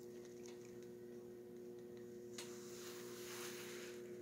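Faint steady electrical hum, with a soft rustle in the second half.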